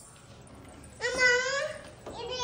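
A young child's voice: one drawn-out, high-pitched call without clear words, starting about a second in.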